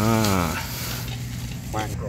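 A steady hiss from a charcoal fire burning under a lidded cooking pot, over a constant low hum.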